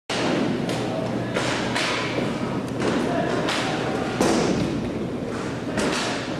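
Roller hockey game play in an indoor rink: a run of sharp knocks and thuds, about one every half second to a second, each with a short echo, over a steady low hum and voices.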